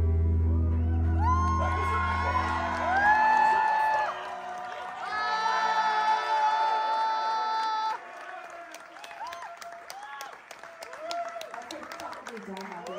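A live metal band's final chord rings out and stops about three seconds in. The crowd cheers and whoops over it, and after a sudden drop in level the cheering gives way to scattered applause and shouts.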